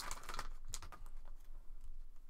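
Cards being slid out of a torn foil trading-card pack and handled, a scatter of light clicks and rustles from the foil wrapper and the card edges.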